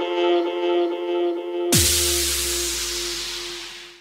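Electronic dance music from a DJ mix: a held synth chord with a light pulse. Near the middle a sudden wash of hiss hits together with a deep tone that falls in pitch, and it all fades out as the mix ends.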